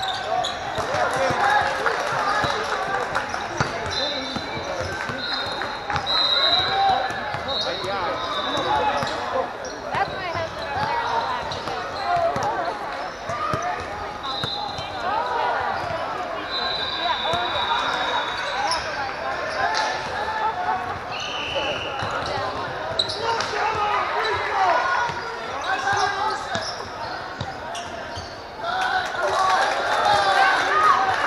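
Gym sound of a basketball game: the ball bouncing on the hardwood court and sneakers squeaking briefly, under steady chatter and calls from many players and spectators, all echoing in a large hall.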